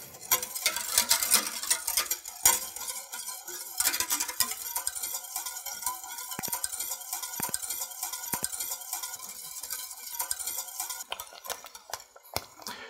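Wire whisk stirring thickening cornmeal polenta in a stainless steel pot, its wires ticking and scraping against the pot sides, under faint background music.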